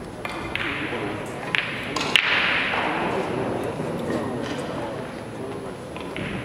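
Sharp clicks of carom billiard balls striking one another in a large hall with some echo. There are several, and the loudest is a pair a little over two seconds in, over a steady murmur of voices.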